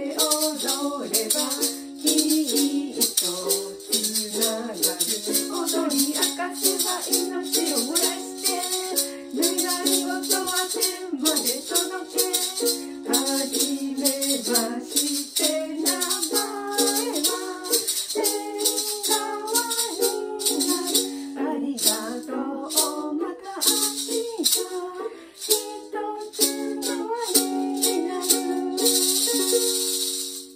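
Two voices singing to a strummed ukulele, with a pair of maracas shaken in a steady rhythm. Near the end the maracas switch to one continuous shake.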